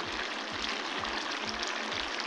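Steady sizzle of a potato and capsicum curry cooking in an aluminium pot, its water cooked down, over a soft background-music beat of about two low thumps a second.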